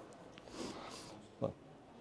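Faint, soft breathy laughter: a quiet exhaled chuckle about half a second in and a short snort-like laugh sound about one and a half seconds in.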